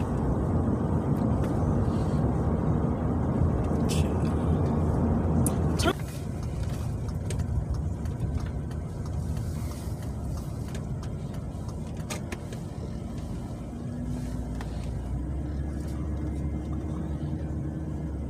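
Road and engine noise inside a moving car's cabin, a steady low rumble that drops abruptly about six seconds in; a steady low hum is heard in the last few seconds.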